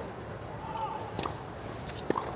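A tennis ball bounced on a hard court by a player before serving: two light bounces, about a second in and again near the end, over a steady background of court ambience.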